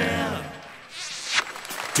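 A close-harmony vocal group's last sung chord dies away over the first half-second, leaving a short lull with faint stage noise before the next song starts with a sung word at the very end.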